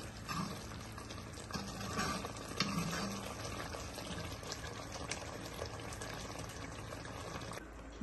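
Onion-tomato masala cooking in oil in a metal kadai, giving a steady low sizzle and bubbling, with a few light ladle stirs against the pan. The sound stops suddenly near the end.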